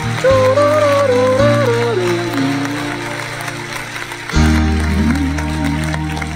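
Instrumental backing-track music: a smooth, wavering lead melody over sustained low bass notes, with a new bass note and a lower melody coming in about four seconds in.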